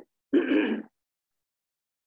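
A man clears his throat once, briefly, about half a second long.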